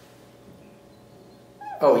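Quiet room tone with a faint steady hum, then near the end a man's loud drawn-out exclamation, "Oh".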